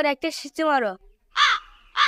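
A crow caws, with one clear, arched caw about one and a half seconds in, after a short spoken word.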